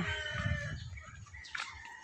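A rooster crowing faintly: one drawn-out call that fades out a little over a second in.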